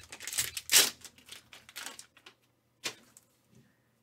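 Foil wrapper crinkling and rustling as a graded card slab is pulled out of it, loudest just under a second in, then a single sharp click near three seconds.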